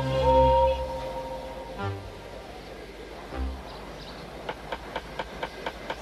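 A steam locomotive whistle sound effect gives two blasts, each bending up in pitch as it starts, over background music. After a quieter stretch, steam chuffs begin about four and a half seconds in and get quicker, as an engine starts to pull.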